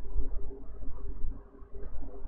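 Low rumble with a faint steady hum: room tone on a desk microphone.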